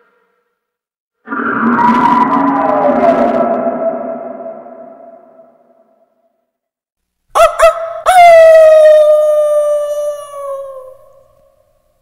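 Added horror-film sound effects: a reverberant, many-toned swell that fades out over several seconds, then a few quick sharp hits and a long pitched tone that slides slowly down and fades, with dead silence between them.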